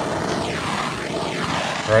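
Hose-fed propane torch burning with a steady hiss as its flame melts a hole through woven plastic weed-barrier fabric.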